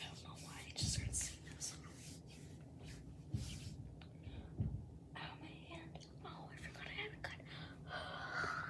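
A girl whispering softly to herself, with a few dull bumps about a second, three and a half and four and a half seconds in.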